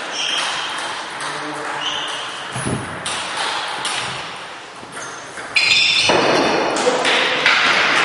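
Table tennis rally: the celluloid ball clicking off the rackets and the table in a reverberant sports hall, loudest in the second half, with voices in the hall.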